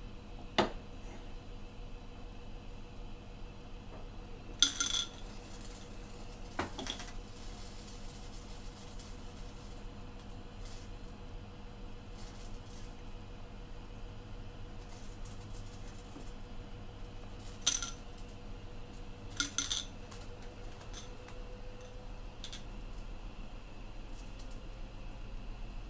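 Glass Ramune bottles clinking while they are held in a gas burner flame. There are a few sharp, ringing clinks: the loudest come about five seconds in, and two more come at about eighteen and twenty seconds in.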